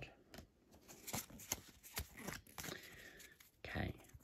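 Pokémon trading cards rustling, with a string of small clicks and snaps, as a handful fresh from a booster pack is flicked through and rearranged in the hands.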